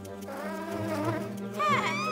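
Cartoon bee wings buzzing in flight, a steady low hum, with background music underneath.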